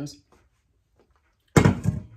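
A stainless steel KitchenAid stand-mixer bowl set down on the countertop: one loud metal clunk about a second and a half in, ringing briefly.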